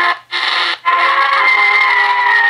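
Music cue from an old-time radio broadcast, held chords of steady notes, coming from a portable digital radio's small speaker tuned to a home AM transmitter on 1100 kHz. The sound cuts out briefly twice near the start.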